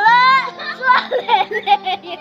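Young boys' high-pitched voices: a long, wavering high note in the first half second, then quick, choppy childish chatter.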